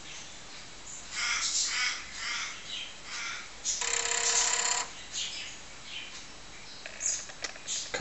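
A run of short bird calls, about half a dozen over two seconds, then a steady buzzing tone lasting about a second midway, followed by a few fainter calls.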